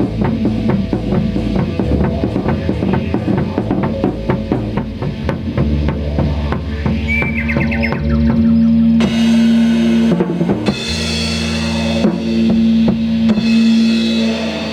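Improvised jazz-rock band music led by a drum kit playing a busy pattern of bass drum and snare over a low held bass note. A little past halfway, long sustained tones come to the front and the drumming thins out.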